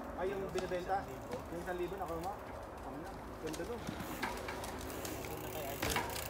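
Faint, distant voices of children talking, with a few light clicks.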